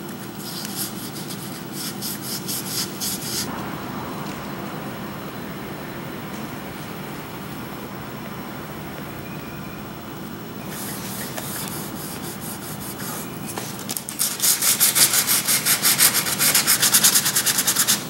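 Hand sanding of faded, oxidized plastic exterior trim with about 150-grit sandpaper, in quick back-and-forth rubbing strokes that scuff the old paint as prep for repainting. The strokes come in spells, quieter in the middle and loudest and fastest over the last few seconds.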